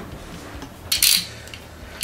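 Handling noise on a wooden workbench: one short, light clatter about a second in, with a second one starting near the end, over quiet room tone.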